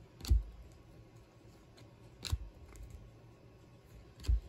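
Donruss Optic basketball trading cards being flicked off a hand-held stack one at a time: two sharp card snaps about two seconds apart.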